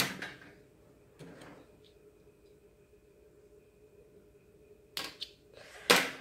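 Brief handling noises of hands working a bead loom and its beadwork on a glass tabletop: a short rub at the start, another about a second in, then a couple of quick clicks near the end. A faint steady hum runs underneath.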